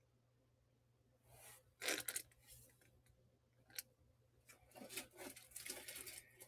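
Near silence broken by a few faint rustles and a small click: handling noise from a hand turning a metal rhinestone brooch close to the phone.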